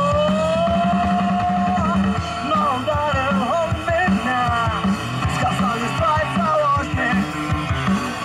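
A live rock band playing through an outdoor PA: drums, bass guitar and electric guitar. Above them a lead line glides up into one long held note during the first couple of seconds, then turns into a winding melody.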